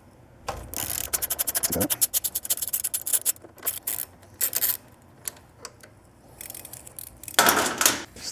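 A small hand ratchet with an Allen socket clicking rapidly, about ten clicks a second, as a bolt is spun out. A few metallic clinks follow, and there is a short scrape near the end.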